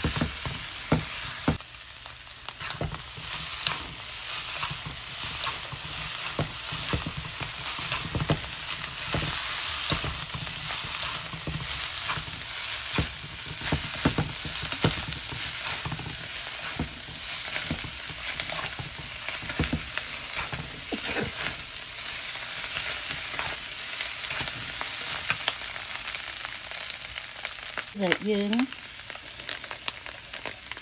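Flat egg noodles and minced meat sizzling as they stir-fry in a frying pan, with the utensil tossing them clicking and scraping against the pan many times.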